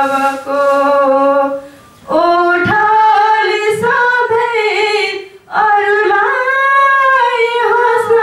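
A woman singing a Nepalese song unaccompanied into a microphone, in long held phrases broken by two short breaths.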